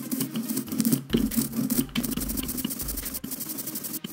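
Small hand brayer rolled back and forth through tacky green relief-printing ink on an inking slab, a steady fine crackle that pauses briefly as the stroke changes direction. It is spreading an even film of ink on the roller before the linocut block is inked.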